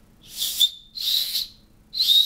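Plastic safety whistle built into a paracord bracelet's buckle, blown in two short breathy blasts about half a second long each. They are mostly rushing air with a thin high whistle tone only partly catching: a whistle that takes a little practice to get going.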